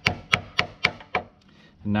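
Claw hammer tapping a nail into a wooden board, about five quick strikes a quarter second apart, then stopping: nails being tacked in to hold a jig piece in place.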